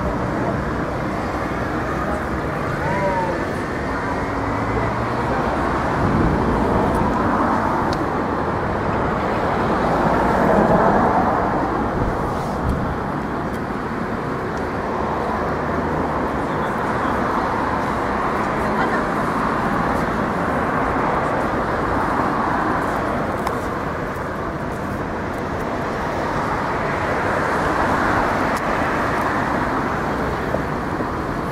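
Steady city street noise: traffic and people's voices in the background, with a brief swell about ten seconds in.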